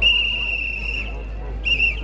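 A high-pitched whistle blown in one long blast of about a second, then a short toot near the end, over crowd voices.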